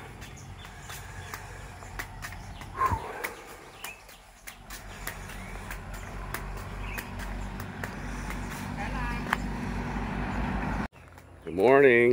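A low rumble with scattered small clicks, then near the end a short call from a person's voice that rises and falls in pitch.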